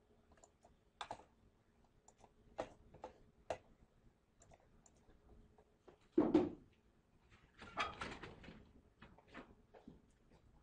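Quiet room sounds during a pause for working: scattered light clicks and taps, a louder thump about six seconds in, and a short rustle or scrape near eight seconds.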